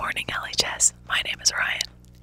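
Speech: a woman talking into a studio microphone, her voice thin and breathy, with a faint steady hum underneath.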